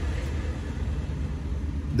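Steady low rumble with a faint even hiss: background noise inside a vehicle's cabin.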